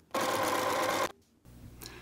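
Electric sewing machine running at a steady speed, stitching through two layered fabric squares, for about a second before cutting off suddenly.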